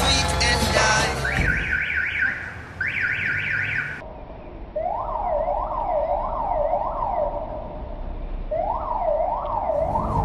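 Music ends about a second in and a siren takes over, first a quick, high up-and-down wail, then from about halfway a lower wail rising and falling in repeated sweeps, with a short break just before the end.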